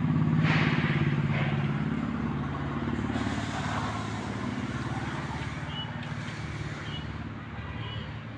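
Motorcycle engine idling steadily, loudest in the first second or two and easing off slightly after that.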